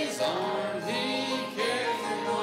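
Church congregation and choir singing a hymn together, with piano and acoustic guitar accompaniment; the voices hold long notes with vibrato.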